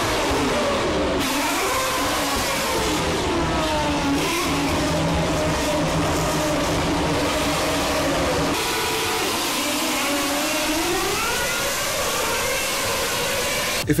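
2013-season Formula 1 cars' naturally aspirated 2.4-litre V8 engines running at high revs as the cars pass down the straight, their pitch rising and falling repeatedly.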